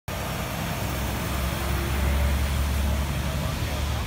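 Steady low outdoor rumble, a little stronger in the middle, with faint voices in the background.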